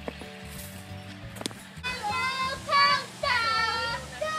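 Background music with steady held notes, then from about two seconds in a child's loud, high-pitched voice shouting in short bursts.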